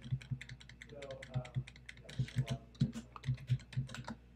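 Computer keyboard keys pressed in a quick, steady run of clicks as a 16-digit card number and an expiry date are typed, mostly by striking the same number key over and over.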